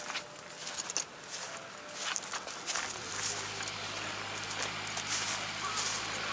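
Footsteps crunching irregularly through dry rice stubble. About halfway through, a steady low hum comes in.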